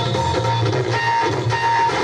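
Instrumental passage of a Marathi song: a plucked-string melody over a steady, pulsing bass beat, with no singing.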